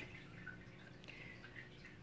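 Near silence: room tone, with a faint click about a second in.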